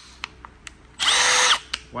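Milwaukee M12 FUEL 3453 cordless impact driver triggered briefly with no load: its brushless motor spins up, whines steadily for about half a second, then winds down, about a second in. No impacting is heard. A few light clicks of handling come before it.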